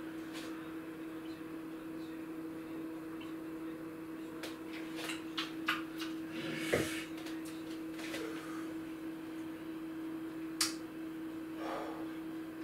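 A steady hum with a few small clicks and handling noises, then a knock about seven seconds in as a beer glass is set down on a wooden chopping board.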